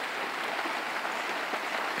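Steady rain falling on a clay-tile roof, heard from underneath as an even hiss with no letup.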